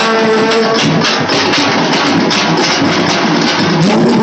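A troupe of large double-headed barrel drums, struck with sticks, pounds out a fast, dense, unbroken festival beat. Over the drums, a held melodic note fades out about a second in.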